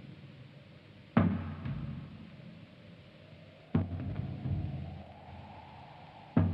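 Film score of slow, deep percussion strikes, one about every two and a half seconds, each ringing out and dying away. A faint held tone rises slowly under the second half.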